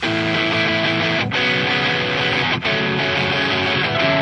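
Recorded rock music, screamo/hardcore style: distorted electric guitars strumming sustained chords, with two brief breaks about a second and a third apart.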